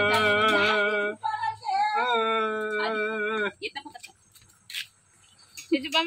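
A voice singing a long held note with slight vibrato, then a shorter wavering melodic phrase, both ending by about three and a half seconds in. After a quiet stretch with a few light clicks, a rooster starts to crow just before the end.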